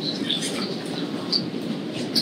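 Steady low room rumble, with a few faint clicks and rustles of items being handled at the presenter's table.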